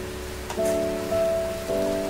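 Background music holding a steady chord that comes in about half a second in, over a steady sizzling hiss of onion, capsicum and paneer stir-frying in a kadai.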